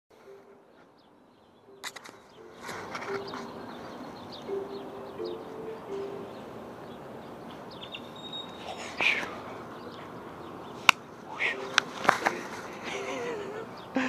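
Faint outdoor background with distant voices, broken by several sharp knocks and rustles of a body-worn camera being bumped as the base moves.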